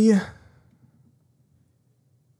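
A man's voice drawn out into a sigh, ending about a quarter second in with a breathy trail-off, then near silence for the rest.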